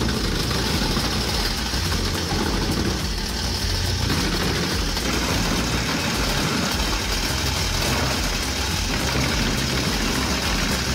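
Wood chipper running steadily under load as birch logs are drawn in by its toothed feed roller and chipped.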